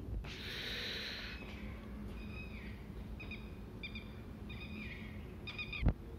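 A bird chirping, about five short calls with a falling pitch, after a brief hiss near the start. A sharp thump just before the end is the loudest sound.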